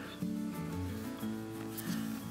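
Soft background acoustic guitar music, with the faint scrape of an X-Acto craft knife blade drawing through watercolour paper along a ruler edge. The blade is dull and due for a change.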